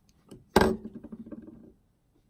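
A single thunk about half a second in as a hard object is set down on a surface, with a short ringing decay after it and a faint tap just before.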